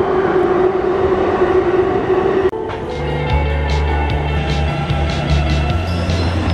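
A metro platform with a steady hum for the first two and a half seconds. The sound then cuts off suddenly and gives way to background music with a bass line and a steady ticking beat.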